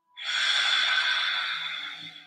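A woman's long, audible breath, as loud as her speaking voice, starting sharply and tailing off over about two seconds.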